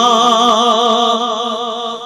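A man singing a naat (Urdu devotional song), holding one long note with a wavering vibrato that fades near the end.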